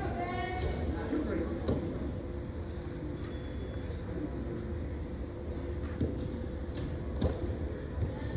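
Large gymnasium with a steady low hum and faint background voices. A voice calls out briefly at the start, and there are three short sharp knocks, one early and two near the end.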